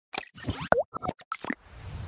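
Sound effects of an animated TV channel logo: a quick run of sharp pops and blips with a short pitch glide in the middle, then a swelling whoosh near the end.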